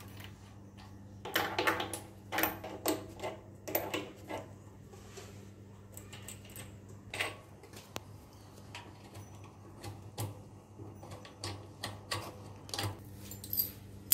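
Irregular metallic clicks, clinks and rattles as the overlock sewing machine's electric drive motor is worked loose from its mounting bracket under the table and handled.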